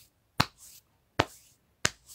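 Three sharp snaps, a little under a second apart, each trailed by a faint short hiss.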